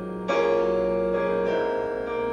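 Gospel piano instrumental backing track playing slow sustained chords, with a new chord struck about a third of a second in and another a little past halfway.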